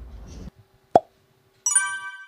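Added editing sound effects: a single sharp cartoon water-drop plop about a second in, then a bright chime that rings out and fades near the end.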